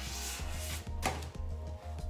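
A ruler scraping shaving foam off a sheet of paper in a couple of short strokes, the second one sharp and brief about a second in, over background music with a steady bass line.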